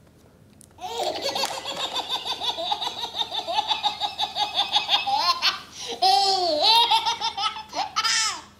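Baby belly-laughing: a long run of rapid laughs starting about a second in, then a short break and a few longer, drawn-out squeals of laughter near the end.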